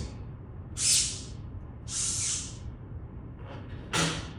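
A man breathing out hard twice, two short breathy hisses about a second apart, the first the louder.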